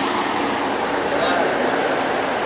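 Steady outdoor background noise with faint, indistinct voices of people nearby.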